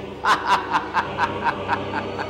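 An old man's snickering laugh: a quick run of short 'heh' pulses, about four a second, beginning a quarter-second in and growing softer after the first few.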